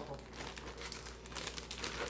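Plastic zip-top bag crinkling with a rapid, irregular crackle as it is opened and tipped to empty chopped red bell pepper into a blender jar.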